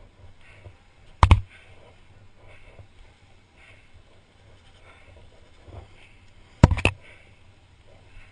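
Two sharp knocks close to the microphone, the first about a second in and the second near the end, each a quick double, over a faint background.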